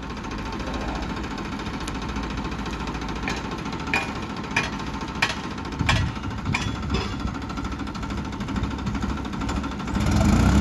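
Farmtrac Powermax 60 tractor's diesel engine running steadily, with a series of sharp clicks about every half second or so through the middle.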